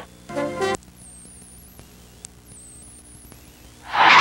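A brief musical sting, about half a second long, near the start, then a low steady hum and hiss from a blank stretch of recording until the broadcast sound cuts back in at the end.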